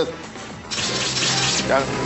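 A loud, steady rushing noise, like water running, starts suddenly about two-thirds of a second in, with a short voice-like sound rising out of it near the end.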